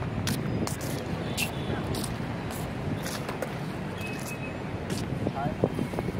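Skateboard wheels rolling over a paved path: a steady low rumble with irregular sharp clicks.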